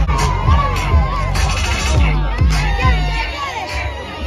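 A crowd shouting and cheering over loud music with a heavy bass beat.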